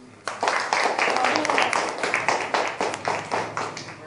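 A small audience clapping by hand, starting about a quarter second in and thinning out toward the end.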